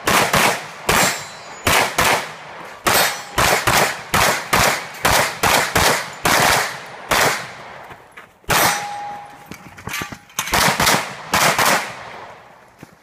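A 9mm major open-division race pistol firing rapid strings, mostly quick pairs of shots. There are two short breaks in the shooting past the middle, and one shot partway through is followed by a brief ringing tone.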